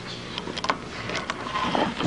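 A few faint clicks and light rustling as things are handled on a desk, over a steady low room hum, with a brief vocal sound just before the end.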